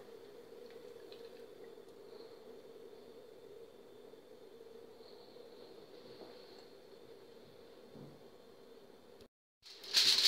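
Faint steady background hum of room tone, with no distinct sound from the thick batter being poured. The audio drops out to silence for a moment near the end.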